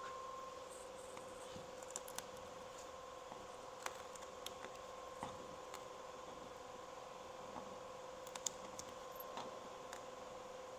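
Small clicks and light scrapes of a hand tool working at screw heads in a wooden boat hull, a few at a time and irregular, louder ones about two, four, five and eight seconds in. A faint steady hum runs underneath.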